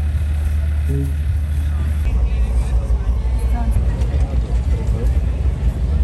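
Low wind rumble buffeting the phone's microphone outdoors, steady at first and gusting after about two seconds, with faint voices of people nearby underneath.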